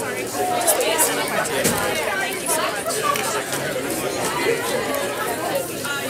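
Background chatter of several voices, none of it clear enough to transcribe, with a few brief clicks or knocks.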